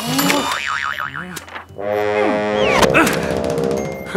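Cartoon soundtrack music with comic sound effects: a fast warbling tone about half a second in, then sliding pitches over held notes in the second half.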